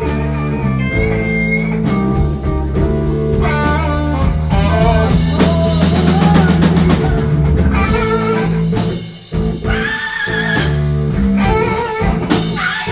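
Live blues-rock band playing, led by a Gibson electric guitar over a drum kit. The music drops out for a moment about nine seconds in, then comes straight back in.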